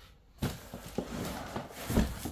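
Large cardboard carton being shifted and laid down on a plastic tray: rustling and a few dull knocks, the loudest bump near the end.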